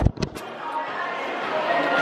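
Indistinct chatter of many people in a shopping centre, with a few short clicks right at the start.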